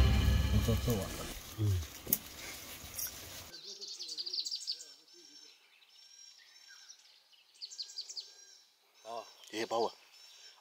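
Background music fades out over the first few seconds, then birds chirping: short, high, arched chirps repeated again and again. A man's voice comes in near the end.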